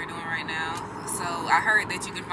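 A woman talking inside a car's cabin, with the steady hum of road noise underneath.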